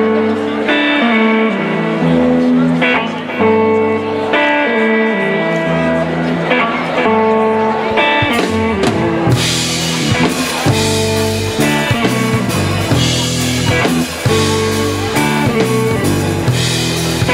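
Live blues band playing an instrumental: electric guitar and bass guitar hold sustained notes, then the drum kit comes in with cymbals about nine seconds in and the full band plays on together.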